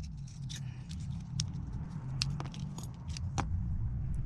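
Light metallic clicks and clinks of steel coil springs and RC shock parts being handled and worked off the shock bodies, about half a dozen scattered ticks over a steady low hum.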